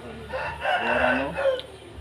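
A rooster crowing once: one long call of a little over a second.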